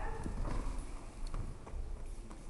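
Young boxers' feet stepping and shuffling on the canvas-covered boxing ring platform: a few irregular, hollow thumps over the low rumble of the hall.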